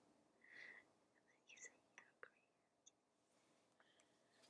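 Near silence, broken by faint whispering and a couple of soft clicks.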